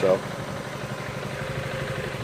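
Yamaha Morphous scooter's 250 cc single-cylinder four-stroke engine idling steadily.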